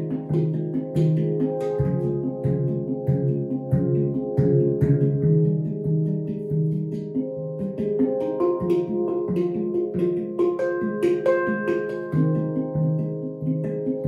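Manik handpan in F Low Pygmy tuning played with the fingers: ringing steel notes over a low note struck again and again in a steady rhythm, with quick light taps between them. Higher notes join in from about eight seconds in.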